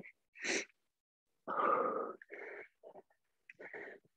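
A woman breathing out audibly in a few short, irregular exhales and sighs, the longest and loudest about a second and a half in: the breathing of recovery after high-intensity intervals.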